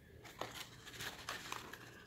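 Faint handling noises from a chrome cigarette dispenser worked by hand: small clicks and rustling, with one sharper click about half a second in.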